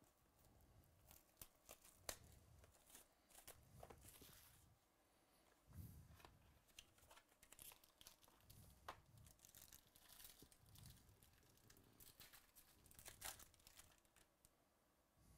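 Faint tearing and crinkling as a sealed trading-card box and its foil-wrapped pack are opened by hand. Scattered light clicks come from the cardboard and cards being handled.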